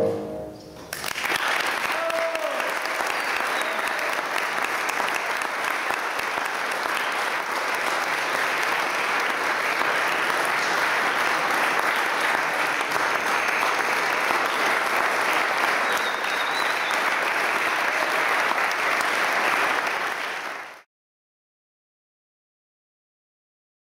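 A song's last note dies away in the first second. Then an audience applauds steadily for about twenty seconds, cut off abruptly near the end.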